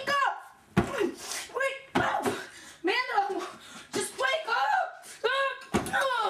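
A high-pitched, raised voice calling out in short phrases, over and over; the recogniser did not catch the words.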